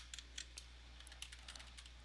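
A few faint, scattered computer keyboard keystrokes as a word is typed.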